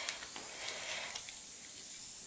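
An LOL Pearl Surprise bath-bomb ball fizzing as it dissolves in a bowl of water: a steady hiss, with a few faint clicks from hands handling it in the water.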